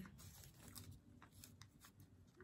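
Near silence, with a few faint light ticks and paper rustles from a fork picking cake out of a paper cake wrapper.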